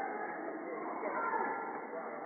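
Indistinct voices of players talking and calling on an indoor futsal court, with no clear words.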